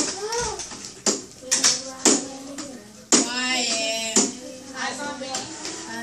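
Children's voices chattering in a small room, with sharp taps or knocks about once a second over the first four seconds.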